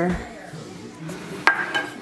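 A single sharp clink of kitchen dishware about one and a half seconds in, ringing briefly after it, over low handling noise.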